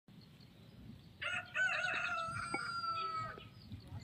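A rooster crowing once: a short first note a little over a second in, then a long held note that fades out about three and a half seconds in.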